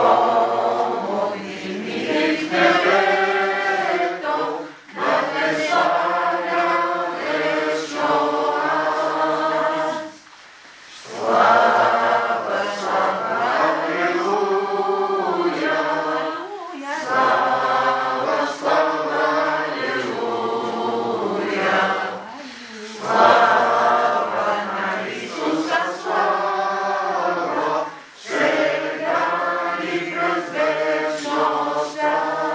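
A group of voices singing a hymn unaccompanied, in phrases about five to six seconds long with brief pauses for breath between them.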